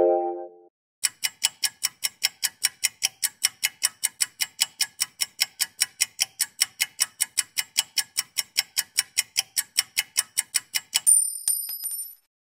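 Countdown timer sound effect: a clock ticking about four times a second for some ten seconds, then a short high ring near the end as time runs out. It opens on the fading tail of a musical chord.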